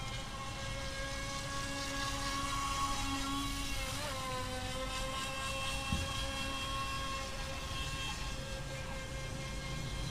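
FT009 RC speedboat's brushless electric motor running at speed: a steady high whine that dips slightly in pitch about four seconds in, over a low background rumble, with a brief thump near six seconds.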